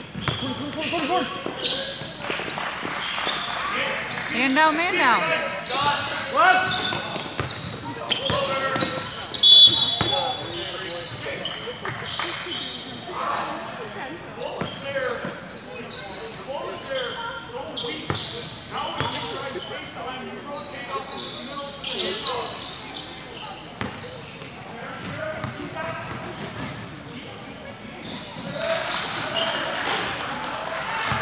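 Basketball game sounds in a large gym: a ball bouncing on the hardwood court and players and spectators calling out, with a short referee's whistle about ten seconds in.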